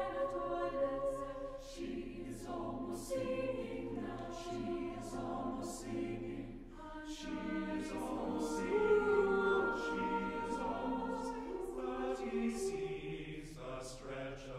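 Unaccompanied eight-part mixed choir (SSAATTBB) singing softly: held 'oo' chords under a line of words. Then the tenors and basses take over with quick repeated syllabic chords.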